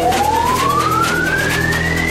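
Electronic dance music with a single synth tone sweeping steadily upward in pitch over sustained low bass notes: a build-up riser leading into the beat.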